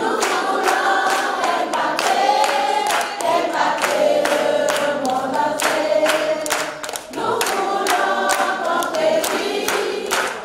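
A group of voices singing a worship song together, with short breaks between phrases, over regular sharp claps keeping time.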